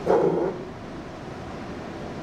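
A short burst of a man's voice into the podium microphone, about half a second long at the very start, then steady room hiss.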